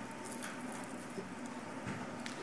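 Low room tone with faint, scattered ticks and rustles.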